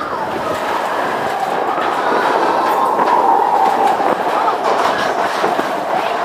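Matterhorn Bobsleds roller-coaster car running along its steel track, heard from the seat: a steady rolling rumble with a faint high whine that sags slightly in pitch, and scattered light clacks.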